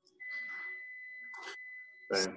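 A steady high-pitched electronic tone in the audio line, with faint soft sounds under it. The sound drops out completely for a moment at the start, and a brief hiss comes about one and a half seconds in.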